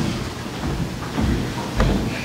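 Footsteps on the church platform, heard through the pulpit microphone as dull low thuds over a low rumble, with two or three thuds in the second half.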